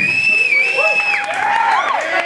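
Small club crowd cheering and whooping as a song ends, with one long high-pitched call over the first second and shorter curving shouts after it.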